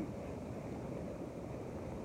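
Hot tub water churning and bubbling from the jets, a steady rushing noise.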